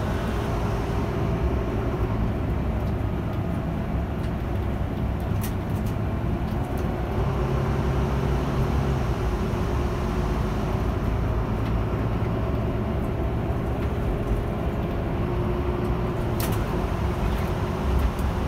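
Volvo bus running steadily at road speed, heard inside the cabin: a constant engine hum mixed with tyre and road noise, with a couple of short clicks.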